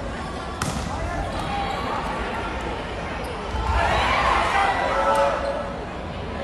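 Volleyball struck sharply about half a second into a rally in a large sports hall, with shouting voices swelling around four seconds in.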